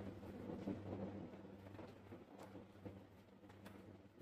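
Near silence: faint room tone with a low steady hum and a few soft clicks and rustles of multimeter test leads being handled as the red probe lead is moved to the meter's 10 A socket.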